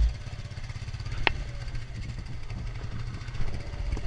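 Polaris 550 ATV engine running at low speed as the quad crawls over a rocky trail, a steady low rumble, with a single sharp click about a second in.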